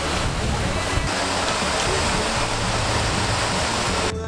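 Steady rush of water from a mountain stream and waterfall, an even hiss of running water.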